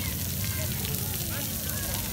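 Jets of a ground-level splash-pad fountain spraying and pattering onto wet paving in a steady hiss, with children's voices faint in the background.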